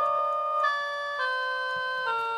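Instrumental keyboard music with held electric-piano-like notes, the chord moving twice, before any singing starts.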